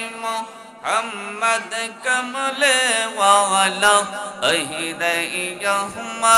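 A man chanting devotional Islamic zikr in a melodic, sung voice, his long held notes bending up and down, with a short breath pause about a second in.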